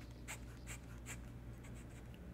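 Esterbrook Estie fountain pen nib scratching across sketchbook paper in short writing strokes, faint, with about three distinct strokes in the first second and lighter ones after.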